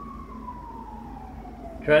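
Emergency vehicle siren wailing, its pitch falling slowly through one long sweep.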